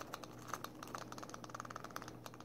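Lock pick raking the pin tumblers of a steel padlock: a fast, irregular run of faint metallic clicks and ticks as the rake scrapes in and out over the pins.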